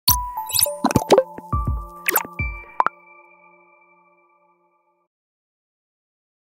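Short electronic logo sting: a quick run of sharp hits and chimes over a few deep bass thumps, ending about three seconds in on a held chord that rings out and fades over the next two seconds.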